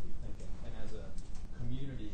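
A man speaking, ending on a drawn-out low hum-like vowel.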